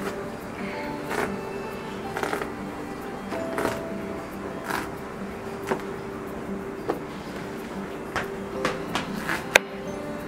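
Background music with steady held tones, over a series of short knocks or clicks about once a second that come closer together in the last two seconds.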